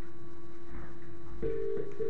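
Steady electronic telephone-line tone heard through a Skype call, with a second, slightly higher tone joining about one and a half seconds in.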